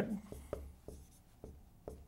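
Dry-erase marker writing numbers on a whiteboard: about half a dozen short, scratchy strokes and taps of the felt tip on the board.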